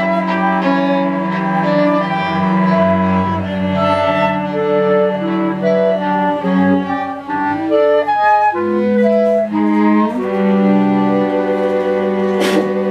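Contemporary chamber music from a live ensemble, led by bowed strings (violin, viola and cello). They hold long notes, with a low sustained note under higher lines that change pitch every second or so.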